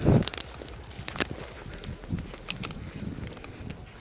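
Footsteps crunching through dry leaf litter and brush on a forest floor at a quick pace, with scattered twig snaps and crackles. A heavier thump comes right at the start.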